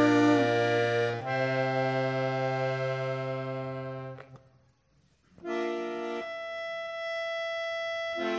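Piano accordion playing slow, sustained chords: one chord gives way to another about a second in, that chord fades out near the four-second mark, and after a second of silence new chords start and are held.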